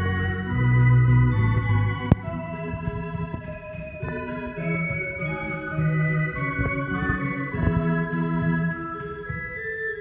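Two-manual electronic organ played in sustained chords, with deep pedal bass notes for the first two seconds. A single sharp click comes about two seconds in.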